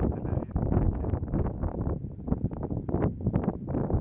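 Wind buffeting the microphone in uneven gusts, a loud rumbling noise.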